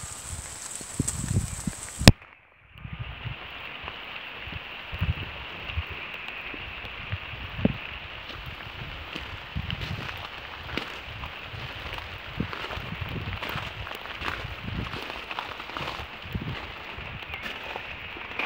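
Steady rain falling on the garden: a constant hiss with many small drop ticks and patter. A sharp click about two seconds in, followed by a brief drop-out, then the rain sound resumes.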